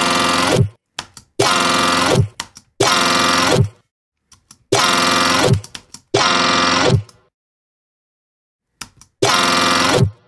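A resampled, warped dubstep synth bass, pitched up 12 semitones in Ableton's Complex Pro warp mode, is played back six times in bursts of just under a second. Each note ends in a quick downward pitch drop, and there is a pause of about two seconds before the last one. The tone shifts from one playback to the next as the formant setting is changed.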